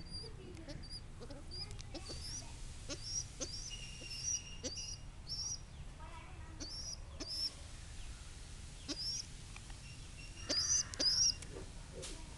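Young pigeons (squeakers) peeping: short, high-pitched chirps repeated throughout, sometimes several in a second, loudest about ten and a half seconds in.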